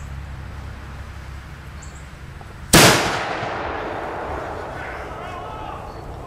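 Homemade black-powder cannon firing once, about three seconds in: a single loud blast that dies away over a couple of seconds.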